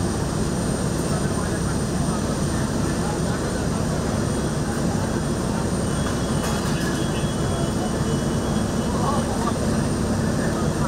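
Fire engine's diesel engine running steadily to drive its water pump, a constant low drone, with people talking faintly nearby.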